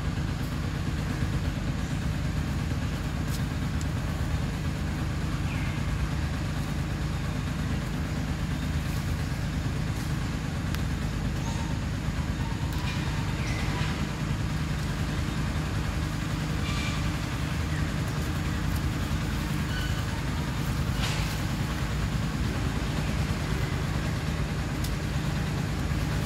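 A steady low mechanical drone with a constant hum, like a motor running nearby. A few faint, short, high chirps come through now and then.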